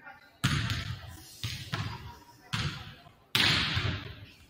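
Basketballs bouncing on a hardwood gym floor: about five sharp bounces, each with a long echo in the large hall, the loudest near the end.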